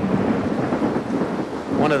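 Storm sound on an old film soundtrack: a steady, dense rush of heavy rain and thunder.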